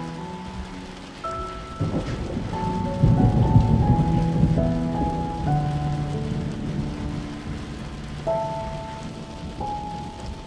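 Rain falling steadily, with a roll of thunder that swells about two seconds in and dies away over the next few seconds, under soft melodic background music.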